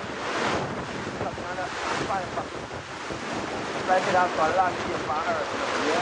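Sea water washing and slapping below, with wind buffeting the microphone; voices break in briefly about a second and a half in and again between about four and five seconds in.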